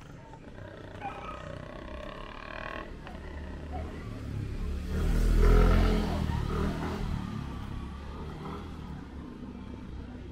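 A motorcycle passing close by, its engine swelling to its loudest about five and a half seconds in, then fading as it rides away.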